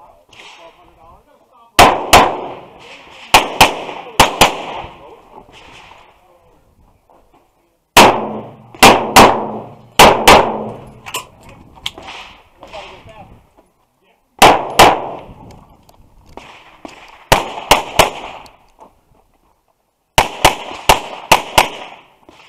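Semi-automatic pistol fired in quick pairs and short strings, about five groups of shots separated by pauses of a few seconds, each shot followed by a short ringing echo.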